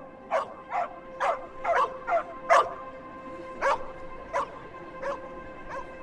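A dog barking repeatedly: about six quick barks in the first two and a half seconds, then a few sparser, fainter ones. Beneath them runs a steady held musical drone.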